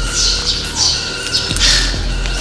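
A bird chirping over and over: short, high, falling chirps about twice a second, the loudest one near the end, over a steady low hum.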